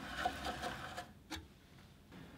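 Burgess BBS-20 bandsaw turned slowly by hand, its wheels and blade running round with a faint, light mechanical rattle while the blade's tracking on the top wheel is checked. The rattle fades out about a second in, with one small click just after.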